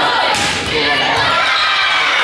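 A volleyball rally in a gym: one sharp thump of the ball being struck about a third of a second in, over players and spectators shouting and cheering.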